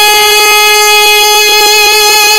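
A voice holding one long sung note at a steady, unwavering pitch in a naat.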